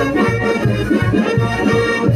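A live brass band playing dance music: horns hold a melody over a steady bass beat of about three to four pulses a second.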